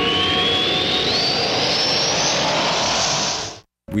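A produced whooshing sound effect: a rushing hiss with a whistle climbing steadily in pitch, cut off suddenly near the end.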